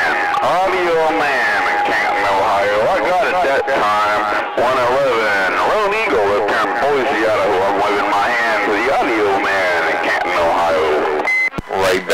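Garbled, unintelligible voices coming through a CB radio receiver on distant skip, with a steady whistle of another carrier under them for most of the time. Near the end the signal drops out briefly with a short high beep before voices return.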